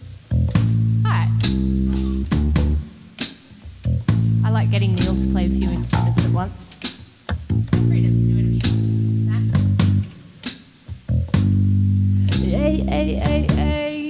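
Live rock band playing an instrumental intro: a choppy, stop-start bass guitar riff with drum kit hits and electric guitar. A held note with vibrato comes in near the end.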